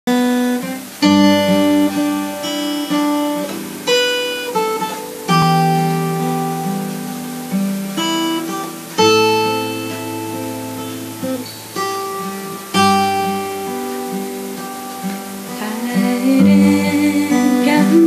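Haedory steel-string acoustic guitar playing the instrumental intro of a slow ballad in G: chords struck about every one to two seconds and left to ring out and fade.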